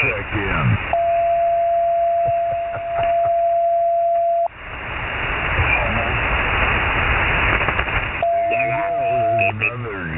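Lower-sideband ham radio receiver audio on the 40-metre band: a steady whistle, the sound of a carrier on the frequency, held for about three and a half seconds from about a second in and again briefly near the end, over band hiss. Garbled voices break through at the start and near the end.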